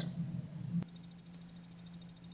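A single click about a second in, then a strobe light flashing about 13 times a second: a rapid, even, high-pitched ticking. Under it runs a steady low hum.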